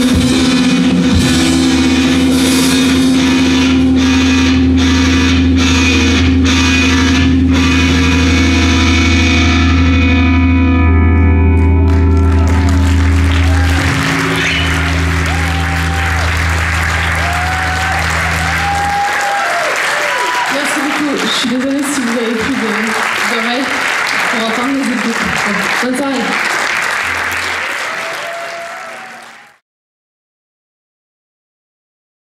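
Rock band ringing out a final sustained, distorted electric-guitar and bass chord with drum and cymbal crashes. About two-thirds of the way through, the instruments stop and the audience cheers and applauds; the sound then fades out just before the end.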